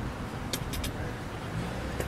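Steady low rumble of road traffic, with a few light clicks about half a second in.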